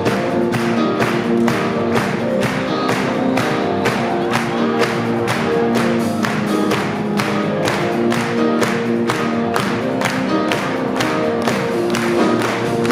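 Live rock band playing an instrumental passage: electric guitar, electric bass and drum kit, with a steady beat of about three drum hits a second.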